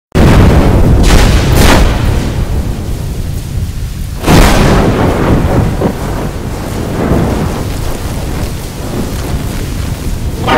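Loud, heavily distorted rumbling noise, thunder-like, with loud swells about one second and about four seconds in. This is the music video's intro audio mangled by a 'G Major' pitch-and-distortion edit.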